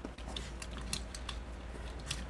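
Light clicks and ticks of hard plastic parts on a Transformers Siege Megatron action figure being folded by hand into tank mode, several small clicks scattered throughout.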